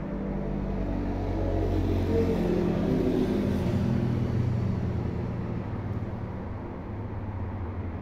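A vehicle passing nearby: a low rumble that builds to its loudest about two to four seconds in, then fades.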